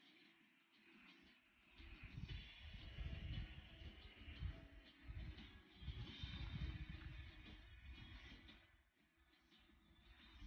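Wind gusting across the microphone, with irregular low buffeting that builds about two seconds in and eases near the end, over a faint steady hiss.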